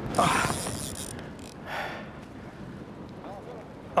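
Fly reel drag clicking rapidly as a hooked tarpon pulls line off against it, loudest about half a second in, then fading.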